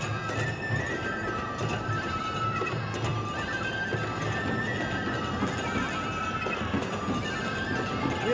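Nebuta festival music: a flute melody with gliding notes over a steady beat of drums and clashing hand cymbals.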